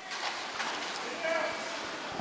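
Ice hockey rink ambience during play: a steady wash of skate and game noise with faint distant voices, one of which stands out briefly about halfway through.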